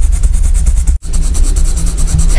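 Colored pencil shading on sketchbook paper, close to the microphone: a continuous rubbing scratch with a heavy low rumble, broken by a brief cut about a second in.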